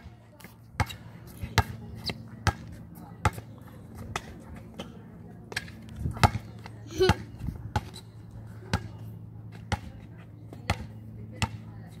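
Basketball being dribbled and bounced on an outdoor hard court: sharp, irregular bounces, about one or two a second, over a steady low hum.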